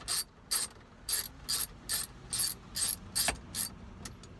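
Ratchet with an extension and 7 mm socket clicking in short, evenly spaced bursts, about two to three strokes a second, as it backs out a gauge-cluster bolt. A single sharper click comes near the end.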